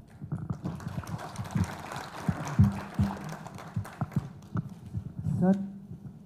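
Audience applauding, a spread of many irregular hand claps, with a short spoken word near the end.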